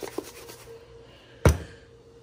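A plastic seasoning shaker set down on a kitchen countertop: one sharp knock about a second and a half in, after a faint tap near the start.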